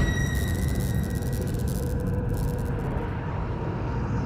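A heavy low rumble slowly dying away, with a few faint steady ringing tones above it: a trailer sound-design boom's long tail.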